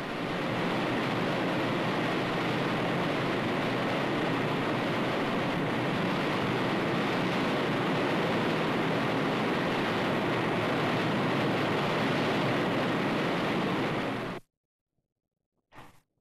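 Wind tunnel airflow: a loud, steady rushing of wind that cuts off abruptly near the end.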